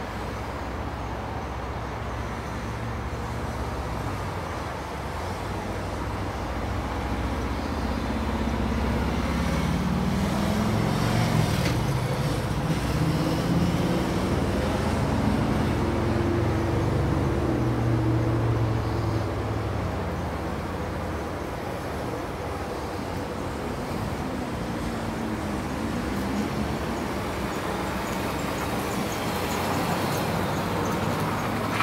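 Road traffic noise, with a motor vehicle's engine growing louder, then fading, loudest about a third to two-thirds of the way through, its pitch rising and falling as it goes.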